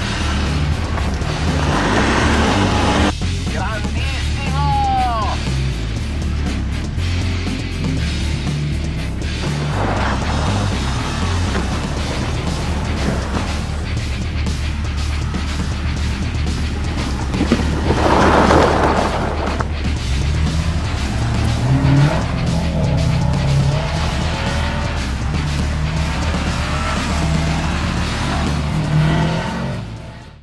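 Subaru all-wheel-drive cars with boxer engines driven sideways on snow, engines revving, with swells of engine and spray noise about two, ten and eighteen seconds in and a brief tyre squeal about four to five seconds in. Background music with a steady bass line runs underneath.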